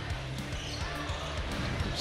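A basketball dribbled on a hardwood gym floor, with a few knocks, over steady background music.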